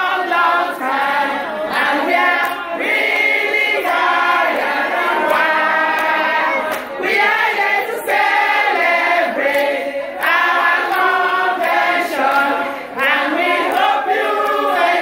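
A group of women singing together in chorus, close to the microphone, the song running in phrases with short breaks between them.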